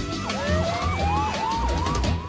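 Emergency-vehicle siren starting up about a third of a second in: a fast yelp sweeping up and down about three times a second over a long tone that winds steadily upward. Background music with a low beat plays under it.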